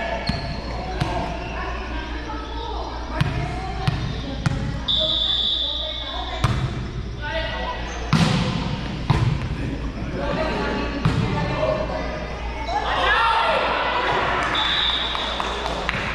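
A volleyball rally in an echoing gym: the ball is struck again and again, a sharp smack every second or so, among players' calls and shouts that swell near the end. Two brief high sneaker squeaks on the court floor, over a low steady hum.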